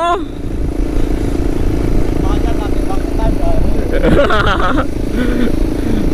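Motorcycle engines running at a steady cruise, heard from on one of the bikes as it rides alongside another. A voice is heard briefly around four seconds in.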